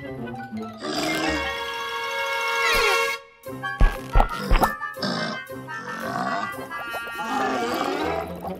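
Cartoon soundtrack: background music with sound effects. Falling whistle-like glides lead into a brief break about three seconds in, followed by a few heavy thumps, with grunting from the giant cactus creature.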